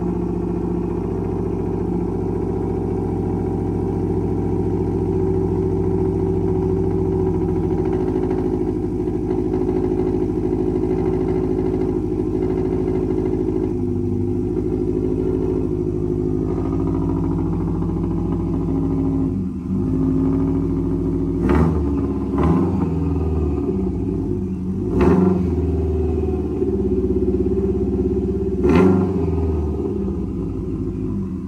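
Modified Subaru Impreza WRX's flat-four engine idling steadily, then blipped four times in quick short surges in the last third.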